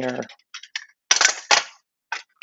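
Plastic-and-metal clicks and clacks as a Milwaukee cordless jigsaw's shoe is set into an orange plastic jigsaw guide: a few light ticks, then two louder clacks about a second in, half a second apart.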